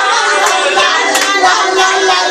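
Several people singing together, with a few sharp hand claps among the voices.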